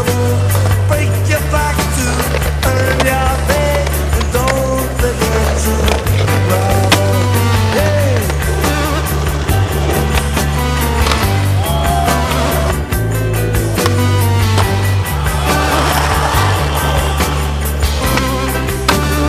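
Rock music with a driving drum beat and a bass line.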